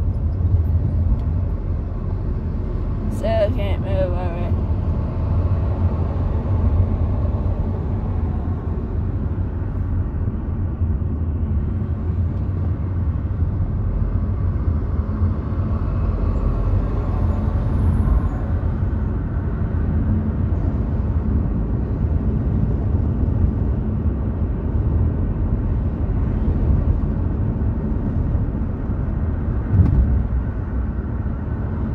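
Steady low rumble of a car driving on a city street, heard from inside the cabin: engine and tyre noise at an even level. About three seconds in, a brief sharper sound with a few clicks and a falling pitch cuts through.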